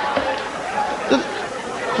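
Audience laughing and chattering after a punchline, many voices at once.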